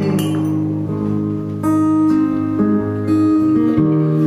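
Acoustic guitar strummed live, its chords left to ring, with a fresh strum roughly every second and a half.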